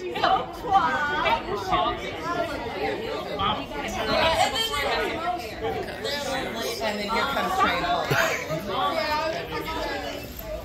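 Group chatter: several women talking at once, their voices overlapping so that no single line of words stands out.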